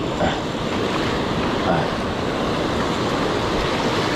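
Ocean surf washing and breaking in the shallows, a steady rush of water.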